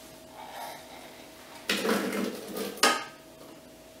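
Kitchenware being handled: about a second of clattering and scraping past the halfway point, ending in a sharp clink, as a glass bowl of cut strawberries is taken up to be tipped into the Thermomix.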